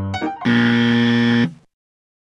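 Light piano music, cut off about half a second in by a loud, flat game-show 'wrong answer' buzzer lasting about a second, marking the practice as disapproved.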